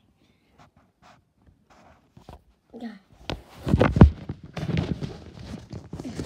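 Handling noise from a phone held right against the body: loud thumps and rustling as it is fumbled and brushed by hands and clothing, starting about halfway through after a couple of near-quiet seconds with faint clicks.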